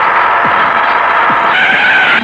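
Bus brakes screeching in a long, steady squeal, then a higher steady tone, like a horn, for the last half second.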